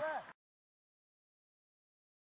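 A football commentator's voice cut off abruptly about a third of a second in, followed by total digital silence.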